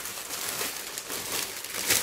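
Clear plastic bag crinkling and rustling in the hands as a respirator mask is slipped into it, in irregular crackles with the loudest rustle near the end.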